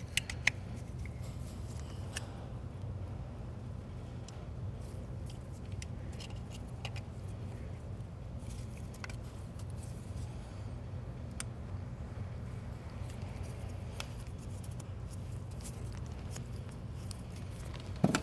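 Plastic wiring connectors being pushed onto ignition coil packs, with scattered small clicks as each locking tab snaps over its notch on the coil to seat the connector. The loudest click comes about half a second in, over a steady low hum.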